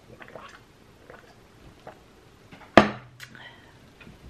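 Soft gulping and swallowing of water from a drinking glass, a few faint clicks, then about three seconds in a glass tumbler is set down on the table with one sharp knock and a brief low ring.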